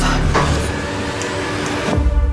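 A loud rushing noise with no clear pitch, with a sharp burst about half a second in, cutting off abruptly.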